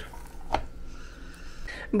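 One sharp click about half a second in, as the plastic lid of a mini waffle maker is shut down over the batter.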